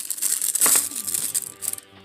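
A sheet of thin tissue wrapping paper crinkling and rustling as it is unfolded from a plastic action-figure accessory, with sharp crackles.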